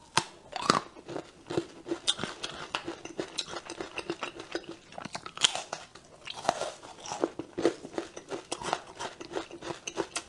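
Close-miked biting and chewing of a dark chocolate bar: sharp snaps at the bites, then a dense, continual run of small crunchy clicks and crackles as it is chewed.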